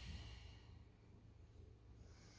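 A person's faint breathy exhale, trailing off within the first second, then near silence with a low steady room hum.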